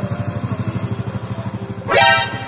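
Small motorcycle engine idling with a steady, fast low pulse. Near the end a short, loud, high-pitched honk or yelp cuts in.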